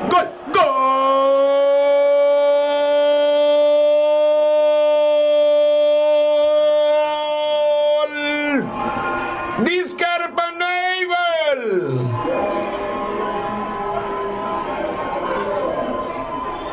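Football commentator's drawn-out goal cry: one long held note of about eight seconds, then after a breath a second, shorter cry that wavers and falls in pitch.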